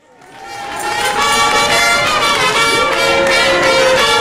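A banda landaise, a southwest-French festive brass band, playing: brass over drums, fading in over the first second and then running at full strength.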